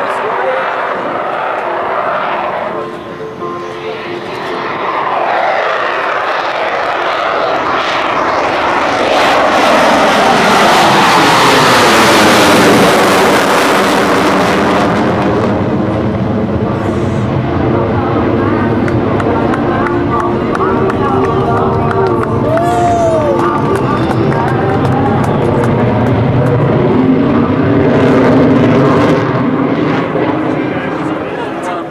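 F-16 Fighting Falcon jet flying a low-speed pass and climbing away on afterburner: steady jet engine noise that builds to its loudest about twelve seconds in, its pitch sliding down as it passes, then a continuing lower rumble.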